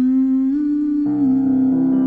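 Lullaby music: a voice humming a slow melody in long held notes, with soft instrumental chords coming in about a second in.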